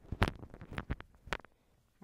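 Handling noise of a clip-on lavalier microphone being clipped to a shirt: a series of knocks and rubs right on the mic, the loudest about a quarter second in, stopping about a second and a half in.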